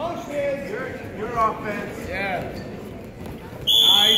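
Men shouting from the mat side. About three and a half seconds in, a referee's whistle gives one short, loud blast, stopping the wrestling.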